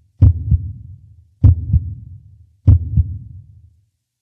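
Deep, heartbeat-like double thuds, added as an intro sound effect: three pairs, each two low hits about a third of a second apart, repeating roughly every second and a quarter, each pair trailing off into a fading low rumble.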